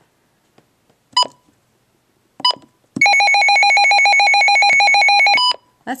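Midland WR-100 weather radio: two short keypress beeps, then its alert tone, a pretty loud, rapidly pulsing electronic siren, played for about two and a half seconds and cut off with another keypress beep.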